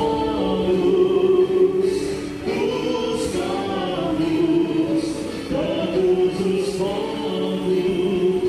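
Choir singing a hymn, with long held notes that change pitch about once a second.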